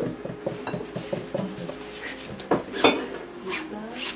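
Small clinks, taps and rubbing from painting tools being handled at the easel, with two sharper knocks about two and a half seconds in.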